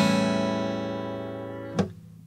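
A7 chord on a Yamaha acoustic guitar, strummed once and left ringing, slowly fading, until the strings are muted with a short click near the end.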